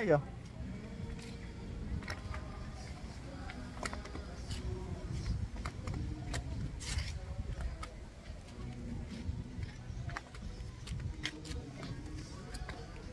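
Slow, scattered footsteps of two people walking down outdoor concrete steps, over a low, uneven rumble on the microphone, with faint distant voices and music in the background.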